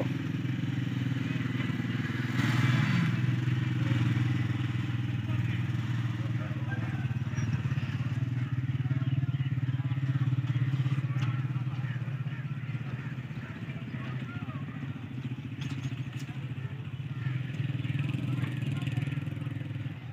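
An engine running steadily at a low, even pitch, its level swelling and easing slowly.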